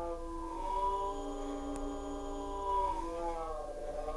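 A voice recording slowed almost to a standstill by time-stretching: one drawn-out, droning vowel held at a steady pitch, starting to waver near the end. A small click sounds about halfway through.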